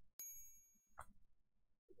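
Subscribe-button sound effect: a click and then a single high bell ding that rings out for about half a second, faint in the mix.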